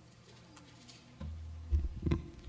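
A handheld microphone is picked up over a church PA. A low hum comes in abruptly about halfway through, followed by a loud handling knock and another near the end.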